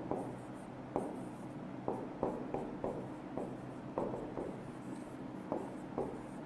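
Marker pen writing on a whiteboard: a string of short, separate strokes and taps, about two a second, over a low steady hum.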